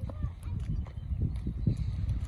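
Footsteps on bare rock, irregular knocks of shoes scrambling over a rocky shore platform, over the low rumble of wind on the microphone.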